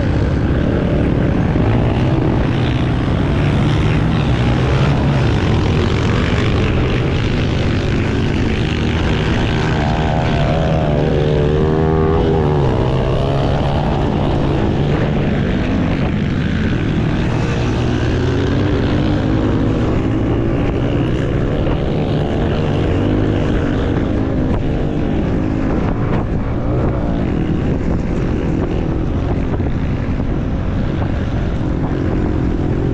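Trail motorbike engine running under way, its revs rising and falling.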